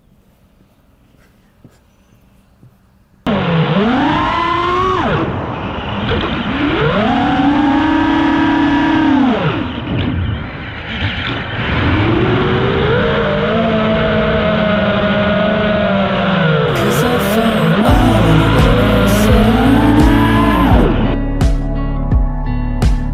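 A 3.5-inch FPV quadcopter's motors and propellers spin up suddenly about three seconds in, then whine loudly in flight, the pitch rising and falling over and over with the throttle. Background music with a beat comes in near the end.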